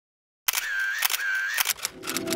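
Camera shutter and motor-wind sound effect, heard twice in quick succession: each time a click, a short whir with a steady high tone, and another click, ending in a quick rattle of clicks.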